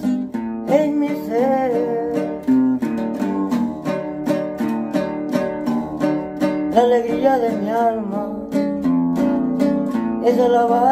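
Acoustic guitar strummed in a quick, steady rhythm, with a man's voice singing a hymn melody in two phrases, one near the start and one about seven seconds in.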